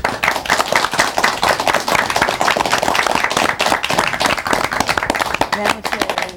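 Studio audience applauding, with many hands clapping densely and steadily, as music comes in near the end.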